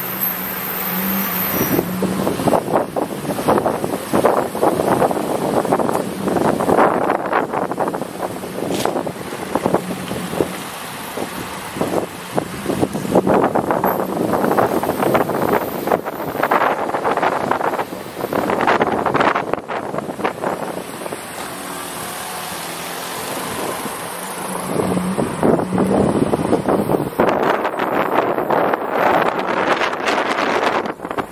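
Driving noise heard from inside a moving car. Wind and road noise rise and fall in irregular surges over a steady low engine hum, easing for a few seconds past the middle.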